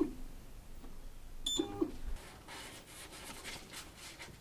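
Anycubic Photon S touchscreen beeping once as its Move Z button is pressed, about a second and a half in, followed by faint rapid ticking.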